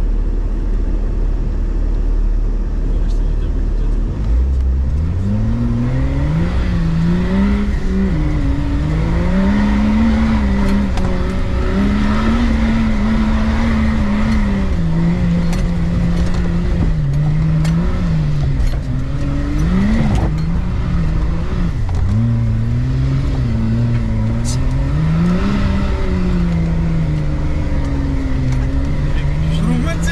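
Off-road vehicle's engine heard from inside the cab, revving up about four seconds in and then rising and falling with the throttle as it drives through deep snow. A few sharp knocks come through partway along.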